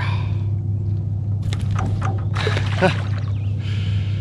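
Handling noises from a small walleye being unhooked by hand: a few sharp clicks and rustling, then a short watery splash near the end as the fish is released. A steady low hum sits underneath throughout.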